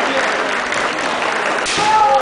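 Audience applause filling a large hall as a kendo bout is decided, with voices mixed in near the end.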